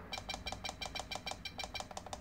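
Rapid, evenly spaced button presses on a FlySky FS-i6X RC transmitter, each giving a faint click and a short high beep as it scrolls through the model slots.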